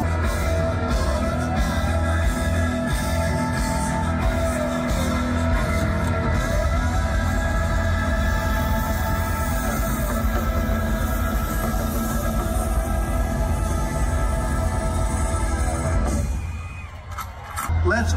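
Live rock band playing loud through the concert PA, heard from within the crowd, with long gliding notes that rise and fall every few seconds. The music drops away about a second and a half before the end.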